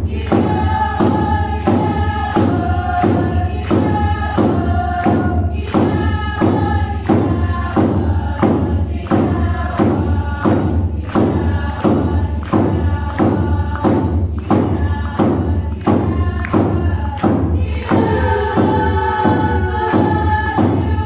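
Group of voices singing a Tlingit dance song in unison to a drum beaten steadily, about two beats a second.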